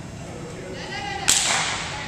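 A single sharp slap about a second in, ringing briefly in the large gym hall, over faint background chatter.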